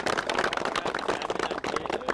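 Applause: a group of people clapping their hands, dense at first and thinning out near the end.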